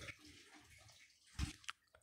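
Near silence: room tone, with a brief faint sound about one and a half seconds in and a small click just after it.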